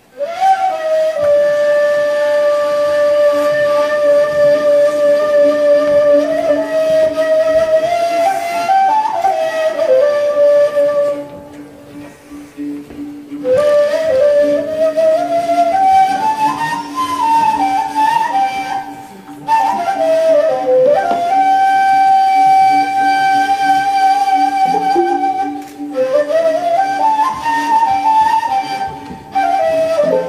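Turkish ney (end-blown reed flute) playing a slow, unmeasured solo: long held notes joined by sliding pitch bends, broken by short breath pauses, over a steady low drone.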